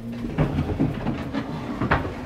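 A dining chair dragged across the kitchen floor: a low rumbling scrape with scattered knocks, and a sharp knock near the end.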